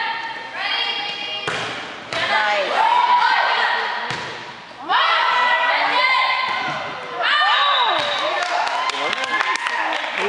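Volleyball rally: high-pitched shouts and calls from the players and the crowd, with the ball struck sharply several times.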